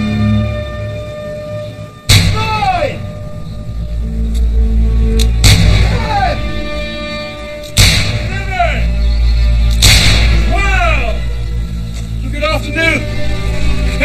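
Four shots from a black-powder gun fired into the air, about two to three seconds apart, each followed by a falling shout. They are part of a celebratory salute, over background music.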